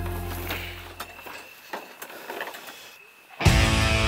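Background music: a soft sustained passage fades away into a few sparse plucked notes, then loud guitar-driven rock music comes in suddenly about three and a half seconds in.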